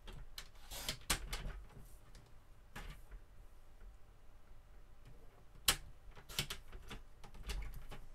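Paper trimmer in use: a string of irregular clicks, knocks and short scrapes as card is positioned on the cutting bed and the blade carriage is run along its rail. The sharpest click comes a little after halfway.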